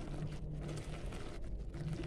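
Thick coconut-milk mixture simmering and being stirred in a wok with a wooden spatula, a soft noisy bubbling and scraping over a low steady hum.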